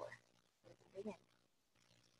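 Near silence, with the tail of a spoken word at the start and brief faint speech murmurs about a second in.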